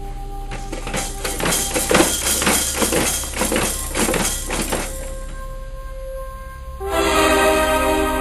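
Rapid clattering and rattling of plastic baby-activity-centre toys being handled and banged for several seconds over faint steady electronic tones. Orchestral music with brass comes in loudly about seven seconds in.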